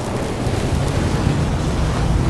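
A low, steady rumble of a cinematic logo-intro sound effect, with a wash of noise over it.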